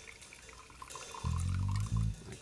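A faint thin trickle of absinthe poured from the bottle over a sugar cube on a slotted spoon, running down into a glass. About a second and a quarter in, a louder low steady note comes in and holds.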